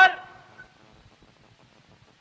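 A man's sermon voice ending a word at the very start, its sound fading out within half a second, then a pause with only faint background hiss.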